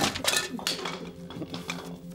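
Small objects swept off a table with an arm: a glass jar of brushes and other items knocked over, clattering and clinking. The loudest crash comes right at the start, followed by a few smaller clatters in the first half second.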